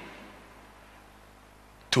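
Faint room tone with a low steady hum in a pause of a man's microphone-amplified speech; his voice starts again just before the end.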